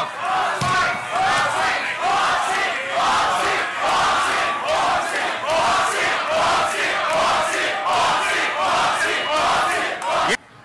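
A large crowd of voices chanting together in rhythm, about one chant a second, loud and steady.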